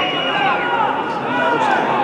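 Several men's voices shouting and calling out at once, overlapping one another on a football pitch, with no clear words.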